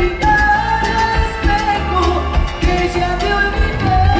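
A live Latin dance band playing with a woman singing lead, holding long notes over a steady beat.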